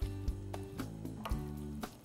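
Background music with held tones and a steady, soft beat.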